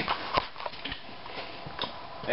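A few scattered light clicks and knocks, about four or five in two seconds, from a handheld camera being moved.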